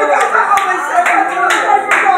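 A few sharp hand claps from people in the pews, scattered unevenly over a raised voice.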